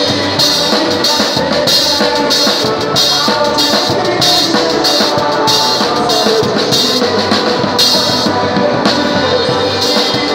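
Live forró band music with a drum kit played close by: cymbals and drums keep a steady, loud beat over the rest of the band.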